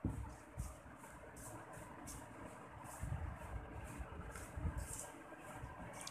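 Faint rustling and scraping of a hand mixing dry gram flour and wheat flour in a steel bowl, in irregular strokes with occasional soft low thumps.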